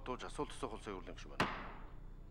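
A wooden gavel is struck once on the presiding desk about one and a half seconds in. It gives a single sharp knock that rings on in the chamber, just after a man stops speaking.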